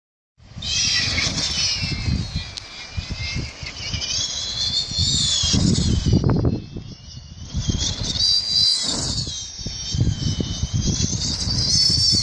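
Gusty wind buffeting the microphone, rising and falling in strong gusts. Above it runs a continuous high-pitched whistle made of several tones that slowly waver up and down in pitch.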